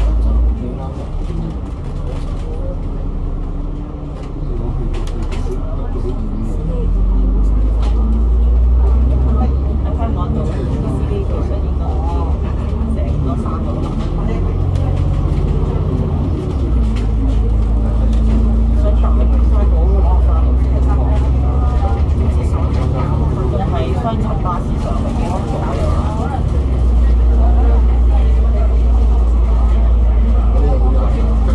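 Alexander Dennis Enviro500 MMC double-decker bus's Cummins ISL 8.9-litre diesel engine running as the bus drives, heard from inside the cabin: a deep rumble that swells louder and eases back several times.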